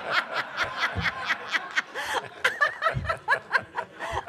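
Audience laughing at a joke: many overlapping chuckles and snickers, in irregular bursts.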